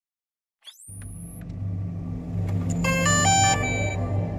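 Intro sting sound design: a fast rising whoosh, then a low rumble that swells, topped by a quick run of stepped electronic tones in the last second.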